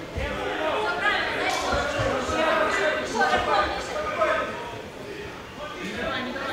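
Voices calling out in a hall over a cage fight, with a few dull low thuds from the fighters grappling against the cage.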